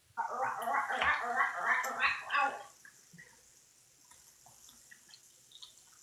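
A person's voice, words unclear, for about two and a half seconds, then near silence with a few faint ticks.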